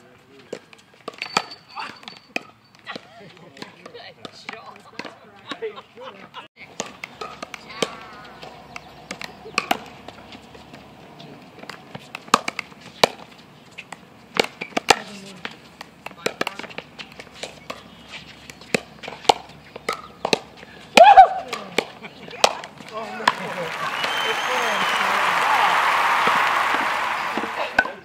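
Pickleball rallies: paddles hitting the plastic ball in sharp, irregular hits, with players' voices in the background. Near the end a rush of noise swells and fades over several seconds.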